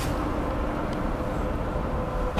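Steady low rumble and hiss with a faint steady hum.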